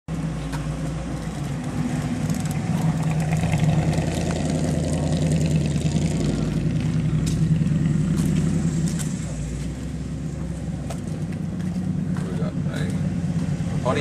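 Car engine running steadily at low speed, a low rumble that swells a little through the middle and eases off after about nine seconds.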